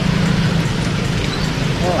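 Water rushing and splashing out of a road culvert as the sand choking it is cleared by hand, over a steady low engine hum. A voice starts speaking near the end.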